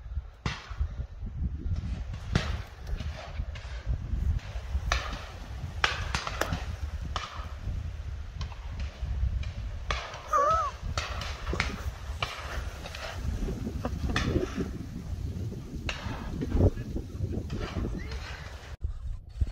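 Shotguns firing repeatedly at irregular intervals as driven pheasants fly over the line of guns, each shot a sharp bang. Heavy wind rumble on the microphone throughout.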